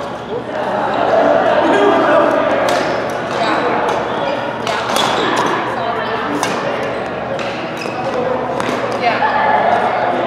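Badminton rackets striking a shuttlecock in a doubles rally: a string of short sharp hits, about one every half second to a second, echoing in a large hall. Voices run underneath.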